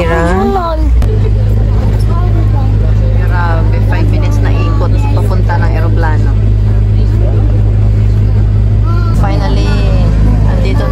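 Steady low drone inside a moving airport apron bus, with faint voices over it.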